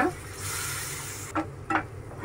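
Thick chutney sizzling in a hot nonstick frying pan over medium flame while a wooden spatula stirs it. The hiss stops abruptly a little past the middle, and a few short knocks of the spatula against the pan follow.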